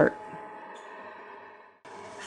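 Anycubic Wash and Cure station running its cure cycle: a steady faint hum with a thin whine from the turntable motor. It cuts off suddenly a little before the end.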